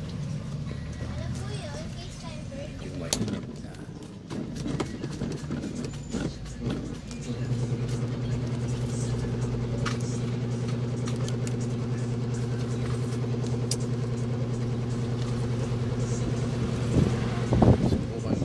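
A few light clicks and taps of small parts being handled. Then, about seven seconds in, a steady low motor or engine hum sets in and holds an even pitch. A few louder knocks come near the end.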